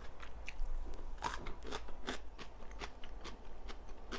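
Close-miked chewing of crisp raw cucumber: irregular crunches and wet clicks, a few a second.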